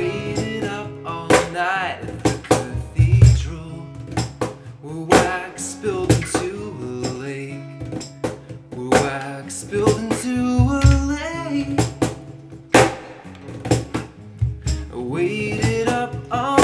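An acoustic guitar is strummed with a cajon, a mix of sharp slaps and deep bass hits, in a steady folk-rock groove. A held, wavering vocal line comes in a few times over it.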